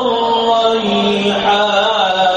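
A voice chanting in long held notes that shift slowly in pitch, one note stepping down about a second in.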